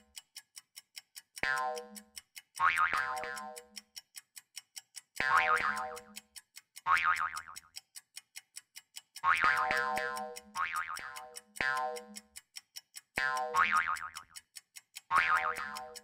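Cartoon 'boing' sound effects, pitched and dying away over about a second, recurring every second or two as tennis balls pop onto the screen, over a countdown timer ticking about four times a second.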